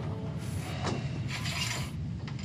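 A cabin curtain dragged along its overhead rail, the hooks sliding and scraping in two runs, the second longer, over a steady low aircraft-cabin hum.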